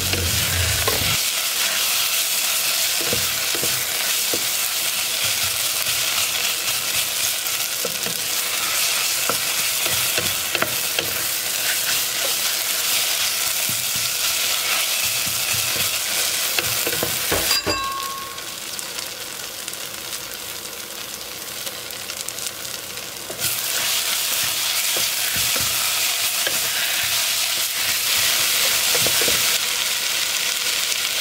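Sliced onions sizzling as they fry in a pot, with a spatula stirring and scraping through them. The sizzle drops lower for a few seconds past the middle, then comes back louder.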